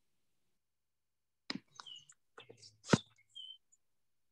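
A few sharp clicks and taps, the loudest about three seconds in, with two brief high chirps between them.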